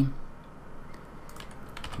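A few faint computer keyboard key clicks, mostly in the second half, as Blender shortcut keys are tapped.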